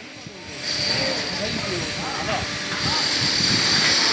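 Indistinct voices talking over steady construction-site machine noise. A high-pitched whine comes in about a second in, after a quieter start.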